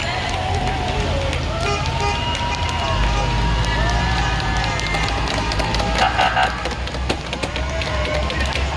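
School buses rumbling slowly past while people shout and cheer with rising-and-falling whoops. About six seconds in there is a brief horn blast.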